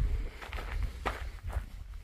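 Footsteps on dry sandy dirt scattered with pine needles, about three steps, over a low steady rumble.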